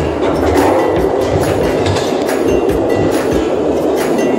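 Cable-car ropeway terminal machinery running, a loud, steady mechanical clatter with many fine clicks, heard over background music.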